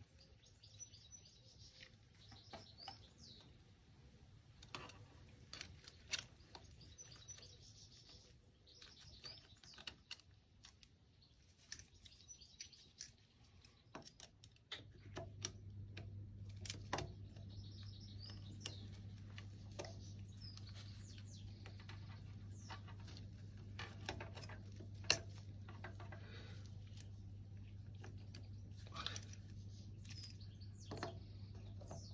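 Faint, scattered small clicks and taps of metal spacer washers and a hand tool against the aluminium rear hub of a motorcycle, with small birds chirping in the background. About halfway through, a low steady hum starts and carries on.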